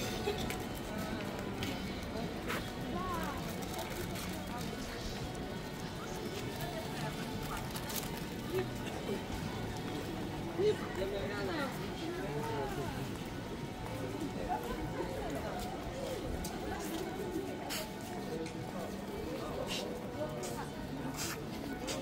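Many passers-by talking at once, no single voice standing out, with music playing in the background.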